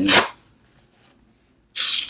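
Paper being handled and crinkled, in two brief rustling bursts with a near-silent pause of about a second between them.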